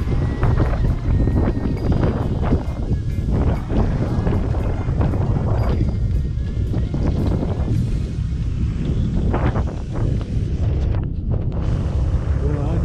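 Wind buffeting a camera microphone on a moving motorbike, a loud, gusty rumble over the bike's engine and road noise.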